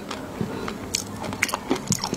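A person chewing a mouthful of food close to the microphone, with irregular sharp wet clicks a few times a second.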